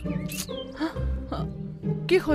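Film background score with short comic sound effects over it, coming about every half second.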